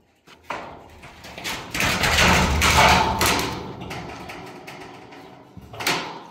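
Corrugated metal sheet scraping and rattling as it is shifted and stepped on, loudest about two to three seconds in, with a sharp metallic bang near the end.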